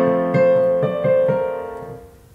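Piano chords played on a digital piano keyboard. A chord is struck at the start and new notes come in about every half second, all ringing on and fading away toward the end.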